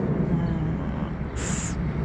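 Steady low rumble of outdoor street noise, with a short hiss about one and a half seconds in.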